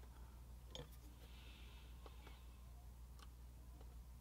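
Near silence: a steady low hum, with a few faint light clicks and taps from small hand tools and styrene plastic parts being handled on the workbench.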